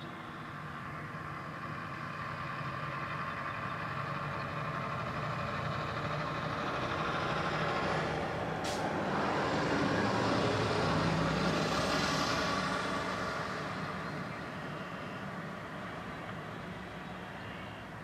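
Diesel locomotives pulling a freight train of loaded gondola cars past, the engine drone and rolling rumble swelling to a peak about eleven seconds in and then fading. There is a brief sharp hiss about nine seconds in.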